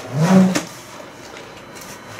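Clear packing tape ripped off the top seam of a cardboard box: one short buzzing rasp in the first half-second that rises in pitch as the tape comes away.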